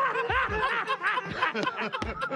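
A man laughing hard, a quick string of high-pitched cackles.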